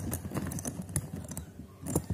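Three-dial suitcase combination lock being handled just after it has opened on the right code: a few small, irregular plastic-and-metal clicks and knocks as its latch and the zipper-pull hooks are worked.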